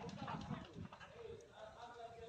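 A large building fire heard from a distance: irregular cracks and pops from the burning, with a faint, distant voice calling out about halfway through.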